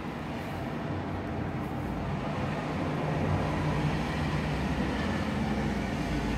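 A steady low mechanical rumble with a faint hum, growing a little louder about two seconds in and then holding.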